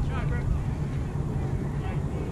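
Steady low wind rumble on the microphone, with distant voices calling out briefly at the start and again near the end.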